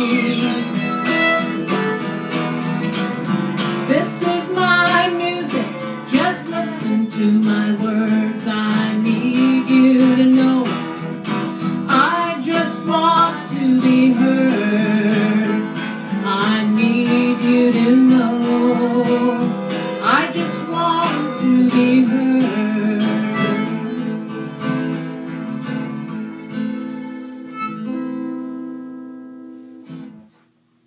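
Two acoustic guitars strumming with a fiddle playing melody lines in an instrumental passage. The music ends on a chord that rings out and fades away near the end.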